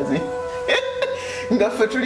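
A woman speaking over background music, with a steady held note running underneath.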